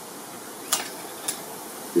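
Steady wind noise on the microphone, with a sharp click a little under a second in and a fainter click about half a second later as small items are handled on a wooden table.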